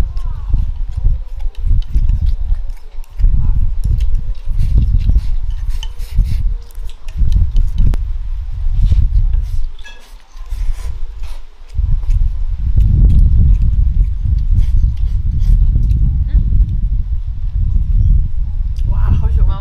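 Close-up eating sounds: chopsticks and mouth working food from a rice bowl, chewing and slurping braised pork belly. There is a heavy low rumble on the microphone in uneven stretches that come and go.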